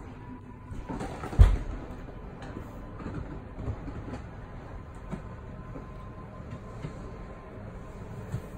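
Power slide room of a fifth-wheel toy hauler retracting under its motor: a steady mechanical running with a faint thin whine, after a single sharp thump about a second and a half in.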